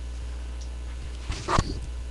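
Steady low electrical hum, with one brief short sound about one and a half seconds in.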